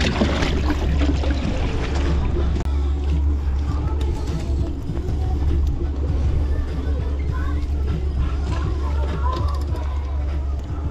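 Water splashing as a hand grabs a bait fish in a boat's live bait well near the start, over a steady low rumble of boat and wind noise.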